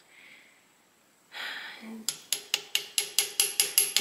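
Small hammer tapping a brass punch against a Singer 66's needle bar: a quick, even run of light metallic taps, about six a second, starting about halfway through. The taps are driving the stiff needle bar down so it can be pulled out of its clamp.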